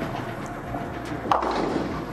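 Bowling ball rolling down the lane with a steady rumble, then a sharp hit and clatter a little over a second in as it reaches the pins of a Big Four split.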